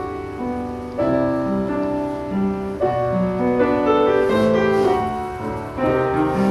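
Upright piano played solo in a slow classical style, sustained chords ringing and new chords struck about a second in, just before the middle, and again near the end.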